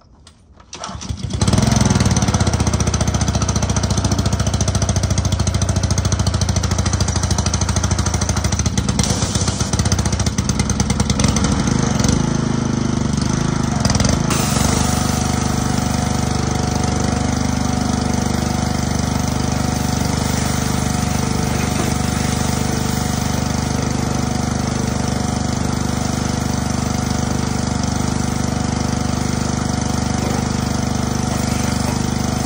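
Pressure washer starting up about a second and a half in, then running steadily while its water jet sprays onto a car's body.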